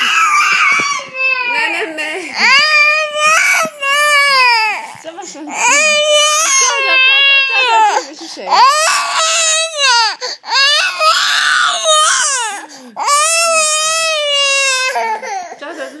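Baby crying hard: a string of about ten loud, high-pitched wails, each a second or so long and rising then falling in pitch, with short breaths between.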